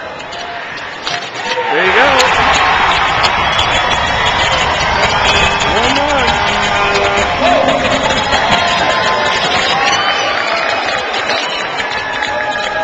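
Ice hockey arena crowd breaking into loud cheering and shouting about two seconds in, then staying loud.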